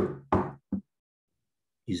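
Knocking: two loud knocks about a third of a second apart, each dying away quickly, then a lighter third knock, as if at a door.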